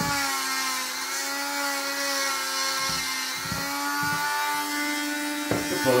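Dremel rotary tool with a stone grinding bit running steadily as it grinds a dog's toenails, its whine dipping slightly in pitch at times as the stone is pressed on the nail.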